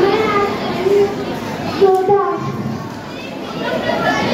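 A crowd of young children chattering and calling out, many voices overlapping, with a few louder single voices standing out.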